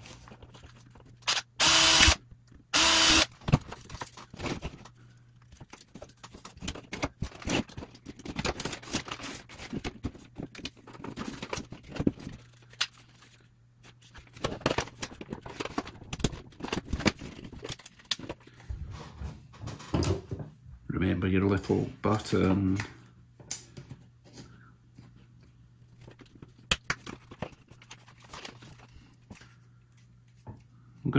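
A small power drill run in two short bursts a couple of seconds in, and in a few brief bursts about two-thirds of the way through, drilling holes in a plastic casing. Clicks and rattles of plastic parts and wire being handled fill the gaps.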